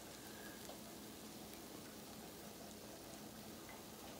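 Near silence: a faint, steady hiss of room tone with no distinct sound events.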